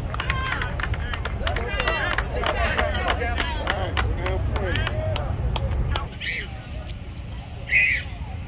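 Background chatter of several voices from players and spectators at a baseball game, over a low rumble that drops away about six seconds in. A brief sharp, high sound near the end is the loudest moment.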